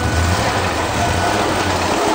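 Pro Stock drag car's V8 engine running steadily as the car rolls forward just after its burnout.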